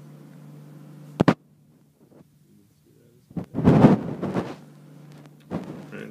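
Handling noise on the recording device's microphone: a sharp click about a second in, a moment of dead silence, then a loud rumbling rub and a shorter knock near the end, over a steady low hum.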